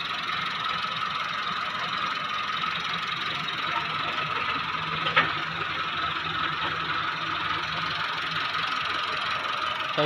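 A machine running steadily, an engine-like drone with a faint steady whine over it, and one short click about five seconds in.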